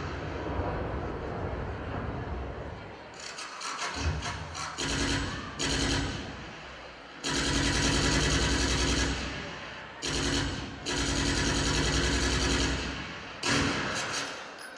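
Recorded machine-gun fire played as a sound effect in repeated bursts, the longest lasting about two seconds each, after a low rumble in the first three seconds.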